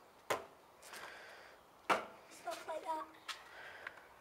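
Two sharp clacks from a stunt scooter, about a second and a half apart, as its deck is spun around the bars and knocks on brick paving.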